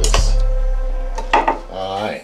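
A kitchen knife knocking against a stainless steel pot twice at the start and once more about a second and a half in, the pot ringing on and fading after the knocks.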